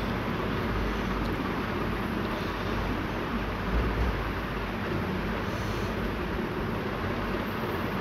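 Sliced onions and green chillies sizzling steadily in hot oil and ghee in a steel pot while ginger-garlic paste is spooned in.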